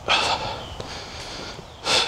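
A man's quick, audible breath in, over in about half a second, then faint background hiss until speech starts again at the very end.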